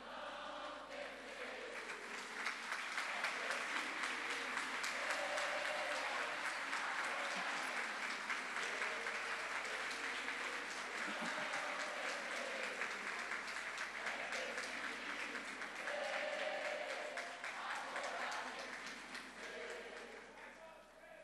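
A large audience applauding in a hall: dense, steady clapping that builds up over the first couple of seconds, holds, and thins out near the end. Crowd voices rise over it a few times, about five, eleven and sixteen seconds in.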